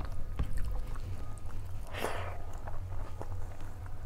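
Close-miked chewing and small wet mouth sounds while eating rice by hand, with fingers squishing rice and dal on a steel plate. Scattered soft clicks throughout, one brief louder noisy burst about halfway, and a steady low hum underneath.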